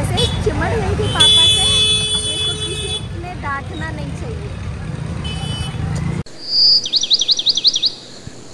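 Street traffic noise with a vehicle horn sounding steadily for about two seconds. The sound then cuts off suddenly and a short, high, rapidly warbling whistle sound effect follows near the end.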